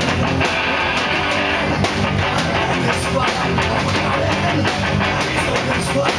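Live punk rock band playing loud: distorted electric guitars and bass guitar strummed over drums keeping a steady beat.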